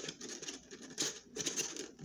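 Rustling and crinkling with a few sharp clicks as a Pokémon card tin and its packaging are handled, in short bursts near the start, about a second in and again about half a second later.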